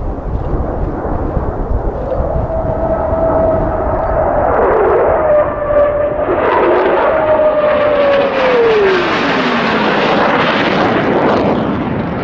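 Twin-engine F-15 fighter jet in a fast pass, its engines roaring. A whine holds steady, then drops in pitch as the jet goes by, about two-thirds of the way through.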